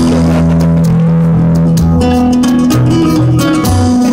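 Solo acoustic guitar played by hand: notes plucked in quick succession over held, ringing bass notes.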